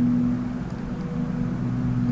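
Steady low hum with a soft hiss under it, the recording's background noise, with no other event.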